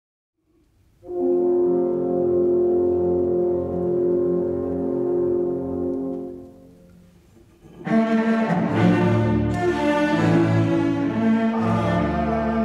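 Orchestra playing, strings to the fore: a held chord enters about a second in and fades away, and after a short gap a fuller passage starts.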